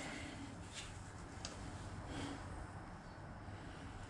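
A few faint clicks of front-panel buttons being pressed on a Lab.Gruppen IPD rack amplifier, spaced under a second apart, over a low steady hum.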